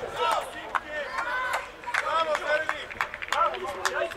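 Men's voices calling out across an outdoor football pitch, with a few short sharp clicks scattered among them.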